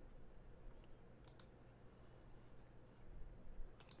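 Near silence with faint computer mouse clicks: a quick double click about a second in and another just before the end.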